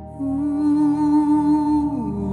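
A voice holds one long wordless note with a slight vibrato over a sustained keyboard chord. The note comes in just after the start and slides down near the end.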